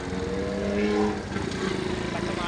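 Motorcycle engine running steadily under way, with a steady pitched tone held for about a second partway through.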